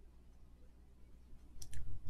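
Quiet pause with a faint low hum, then two short clicks about a second and a half in.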